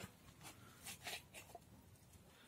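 Near silence with a few faint, short rustles: a tomato seedling being slid out of its plastic cup and set into loose soil by gloved hands.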